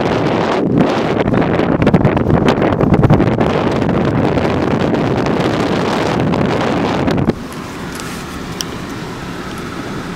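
Wind buffeting the microphone over the rumble of a car driving on a snow-covered road, loud and rough. The sound drops off suddenly about seven seconds in, leaving a steadier, quieter car-cabin rumble with a few faint clicks.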